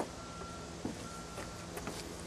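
A vehicle reversing alarm beeps faintly in the distance, a steady high tone about once a second. A few soft thumps sound as a man moves about on wooden deck boards.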